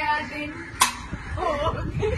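A single sharp smack a little under a second in, amid people's voices.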